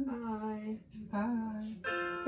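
A person hums two long held notes, then near the end a note starts from a piano app on an iPad, steady and even, played to check the pitch.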